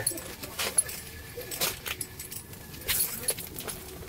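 Handling noise of landing a fish through an ice hole: scattered light clicks and rustles of hands, clothing and fishing gear, with a few sharp ticks spread through.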